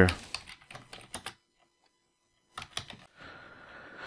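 Computer keyboard typing a short message: a quick run of keystrokes, a pause, then a few more keystrokes.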